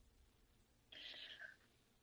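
Near silence, with a faint, short breathy sound from a person about a second in.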